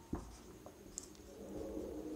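Marker pen drawing on a whiteboard: faint strokes with two light taps, one just after the start and one about a second in.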